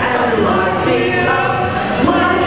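A soundtrack song playing over a theatre's sound system, with several voices singing over the music.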